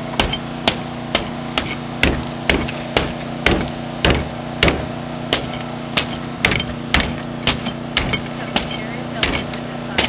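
Axe chopping into a car's laminated windshield, about two strikes a second in an even rhythm. A small engine runs steadily underneath.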